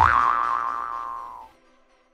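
A cartoon 'boing' sound effect: a single springy pitched tone that bends up sharply at the start, then holds and slowly sinks as it fades out after about a second and a half.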